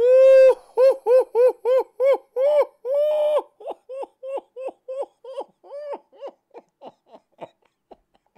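A man laughing in high-pitched, hoot-like bursts: one long loud burst first, then a run of short ones about three a second that grow quieter and more clipped toward the end.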